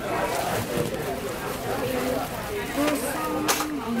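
People talking indistinctly in a restaurant, with a short sharp noise about three and a half seconds in.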